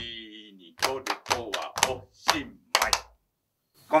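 Hand claps and foot stamps in a quick body-percussion rhythm, about eight sharp strikes over two seconds, with the rhythm words chanted along.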